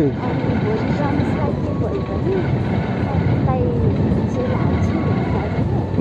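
Motorcycle riding along a street: a steady mix of engine and wind noise heard from the rider's seat, with a few short snatches of voice over it.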